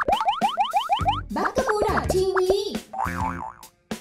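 Cartoon logo sting: a quick run of about eight rising boing glides in a little over a second, then squeaky wavering tones and a short warbling musical phrase that stops shortly before the end.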